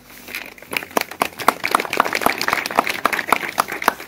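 A small audience clapping, a dense patter of hand claps that builds up about a second in.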